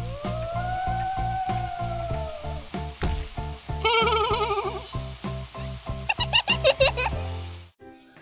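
Cartoon ghost voices wailing over background music with a steady beat: one long wail that rises then falls over the first few seconds, a quavering wail around the middle, and quick warbling cries near the end, after which the music stops.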